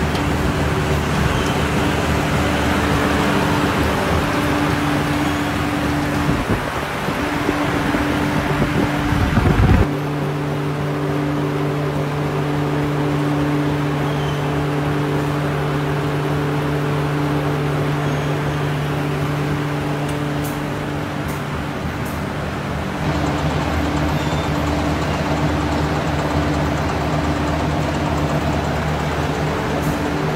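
Tapioca-starch processing machinery running in a sabudana factory: a steady mechanical hum with a few constant tones over a broad rushing noise. It grows rougher and louder just before ten seconds in, then the mix changes abruptly, and changes again a little past twenty seconds.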